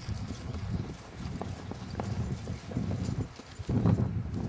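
Irregular dull thumps and knocks with a few sharp clicks, the loudest thump just before the end.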